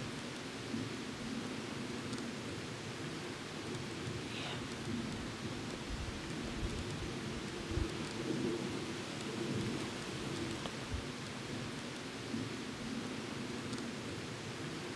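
Steady outdoor ambience among trees, an even hiss with a few brief low rumbles of wind on the microphone.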